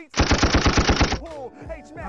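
A burst of rapid automatic-gunfire sound effect, about a dozen evenly spaced shots in roughly one second, that starts just after the rapped line ends and cuts off suddenly.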